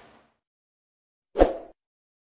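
Silence, then about one and a half seconds in a single short pop sound effect from a YouTube subscribe-button animation.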